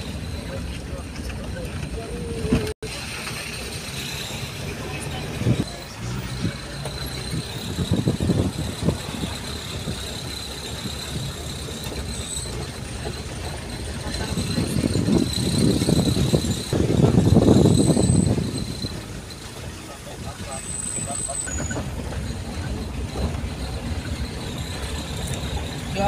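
Engine and road noise of a moving vehicle heard from inside it, a steady rumble that grows louder for a few seconds about two-thirds of the way through.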